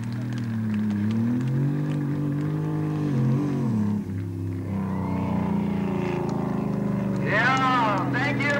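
Drag-racing truck's engine running hard, its pitch rising and falling for the first few seconds before dropping away. The sound breaks off briefly about halfway through, then comes back as a steadier drone, with a higher wavering sound joining near the end.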